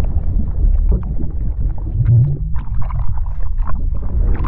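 Sound effects for an animated underwater logo intro: a deep steady rumble with many small scattered bubbly clicks and patters over it.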